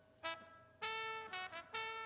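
Solo trumpet track from a live recording played back through a mixing console's channel gate in expander mode. The gate opens on each note and closes between them, pulling the background down by 24 dB, so the phrases stand out against near silence. A brief note comes first, then a longer note about a second in that fades away, then two more short notes near the end.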